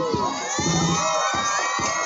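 A crowd of spectators, many of them children, cheering and shouting together, with many high voices overlapping.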